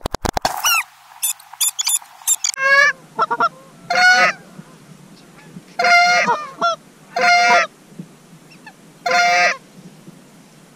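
Canada geese honking. A run of shorter, higher calls comes over the first couple of seconds, then loud honks in short bursts every second or two. A quick cluster of sharp clicks sits right at the start.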